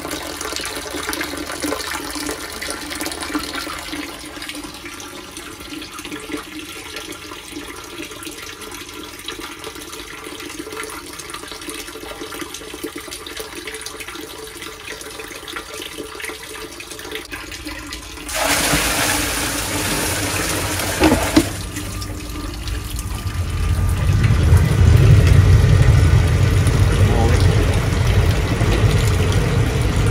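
Water running from an inlet pipe into a sewage pump chamber, a steady trickle and splash. About 18 seconds in, a louder rush of water lasts about three seconds. Over the last several seconds a low rumble builds and becomes the loudest sound.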